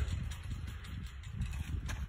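Faint scuffs and taps of sandals on a concrete discus circle as a thrower turns and releases a discus, over a low steady rumble.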